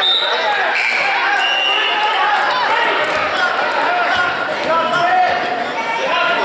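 Basketball bouncing on a gym's hardwood floor during a youth game, amid overlapping shouts and chatter from players and spectators.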